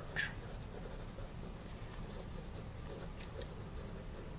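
Writing by hand on paper: short, faint scratchy strokes as block capitals are printed, over a steady low room hum.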